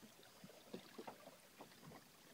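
Faint water lapping and trickling against the hull of a Hobie Tandem Island sailing kayak under way, in small irregular splashes.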